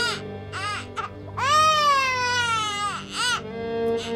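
A baby crying. Short cries early on are followed by one long wail that rises and falls, then a shorter cry near the end.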